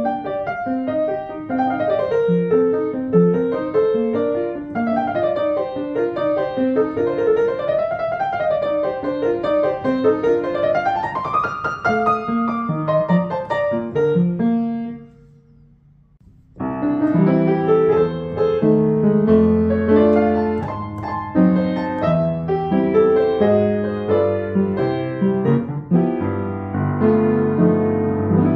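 Yamaha U1 acoustic upright piano being played: a flowing melody over broken chords that climbs to a high run about twelve seconds in, then fades. After a brief faint gap halfway through, a second, fuller passage with sustained bass notes starts abruptly.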